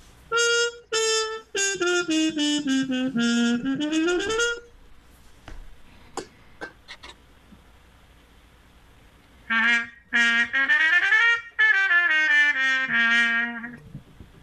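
Trumpet played with an old aluminium Harmon mute with its stem removed: a phrase of short notes that slides down and back up. After a pause with a few light clicks, a similar phrase is played on the trumpet with a white mute, which sounds almost like a bright cup mute.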